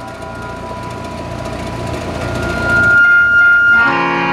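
A pause in the qawwali music filled by the noisy hum of the hall's sound system, with a single steady high tone ringing through the speakers for over a second in the second half. Harmonium and tabla music come back in at the very end.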